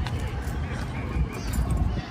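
Wind and handling noise rumbling steadily on a phone microphone carried on a walk.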